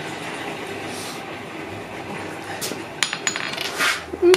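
A steady hiss, then about three seconds in a few light metallic clinks and a short scrape as the red-hot iron workpiece, held in tongs, is laid on the steel anvil ready for hammering.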